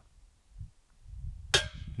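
A putted disc striking the metal top band of a disc golf basket: a single sharp clank about one and a half seconds in, marking a missed putt, over a faint low rumble.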